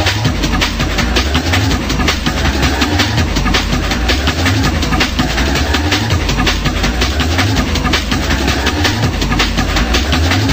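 Fast techno track in a DJ mix: a steady, repeating bass pulse under dense, driving hi-hats, with a chugging, machine-like texture.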